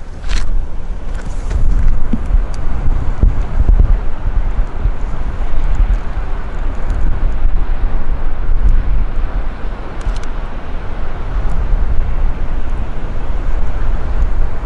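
Wind buffeting the microphone: a loud, deep rumble that swells and eases in gusts. A few footsteps sound near the start.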